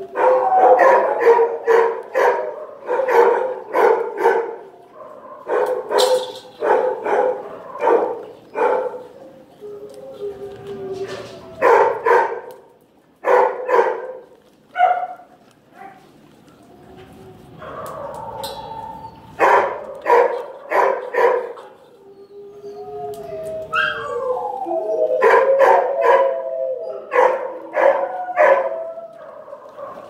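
Shelter dogs barking in repeated bursts and howling, with a lull about two-thirds of the way through. Near the end several howling voices overlap at once.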